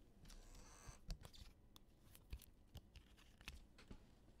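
Near silence with faint scattered ticks and a brief soft rustle near the start: trading cards being handled and slid across the table.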